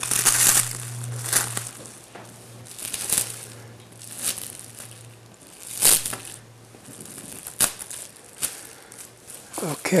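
Plastic cling film (saran wrap) crinkling and rustling in irregular handfuls as it is pulled apart and smoothed flat by hand. It is loudest about half a second in and again around six seconds in.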